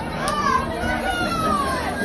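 Children's voices calling out in high, gliding tones over the chatter of a crowd of people.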